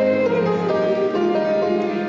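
Church hymn music: held instrumental chords that move to a new note every half second or so, with little sign of voices.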